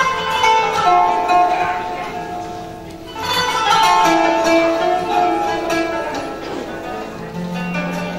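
An instrumental taksim on Turkish plucked-string instruments: an improvised, free-rhythm melodic prelude. It comes in two phrases, the second starting about three seconds in, and a low drone note enters near the end.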